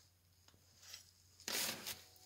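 Mostly quiet, then a brief scraping rustle about a second and a half in, lasting under half a second: handling noise of metal parts or the phone near a concrete floor.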